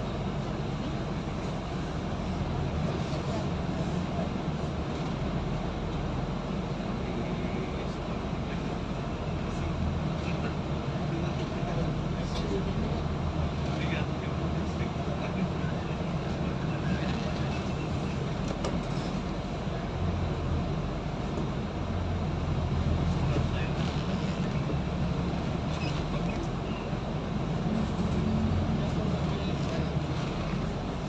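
Vehicle engine and road noise heard from inside a slowly moving vehicle: a steady low rumble that rises and falls a little with no sharp events.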